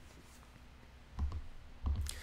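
A few soft clicks with low thumps over faint room tone: two close together a little after a second in, and one more near the end.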